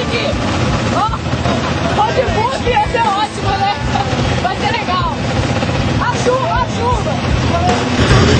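Voices and laughter, not clear enough to make out as words, over the steady low running of off-road motorcycle engines idling.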